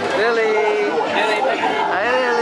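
Overlapping voices and chatter, indistinct, with a high pitched voice held for about a second near the start.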